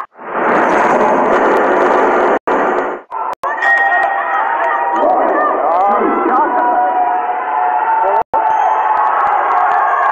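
Loud arena crowd at a boxing bout: a dense roar of cheering for the first two seconds or so, then many voices shouting and calling over continuing crowd noise, with a few brief cut-outs.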